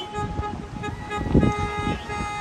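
Car horns honking in long held blasts as the wedding party's cars arrive, with wind buffeting the microphone and a strong gust about a second and a half in.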